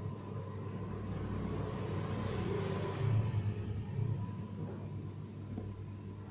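Low rumble of a road vehicle passing, building to its loudest about three seconds in and then fading, with a hiss over it.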